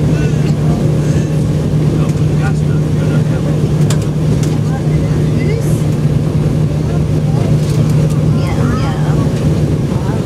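Jet engines of an Embraer 195 airliner running steadily, heard from inside the cabin as a constant low hum with no spool-up. Faint passenger voices sound in the background.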